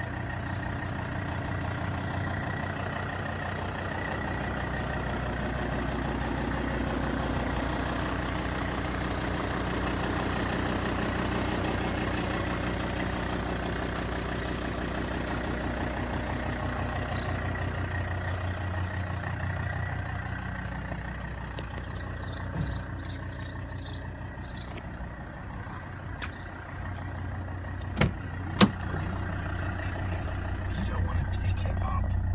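A vehicle engine idling steadily, with two sharp clicks a little over half a second apart near the end.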